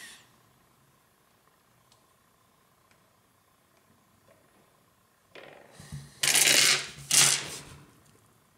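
Near silence for about five seconds, then polished tumbled stones clattering against each other as they are handled, with two loud rattling bursts near the end.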